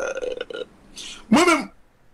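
A man's wordless vocal sounds: a held sound at a level pitch at the start, then, about a second and a half in, a short loud one that rises and falls in pitch.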